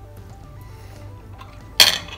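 A metal fork set down on a ceramic plate, one sharp clink near the end, over faint background music.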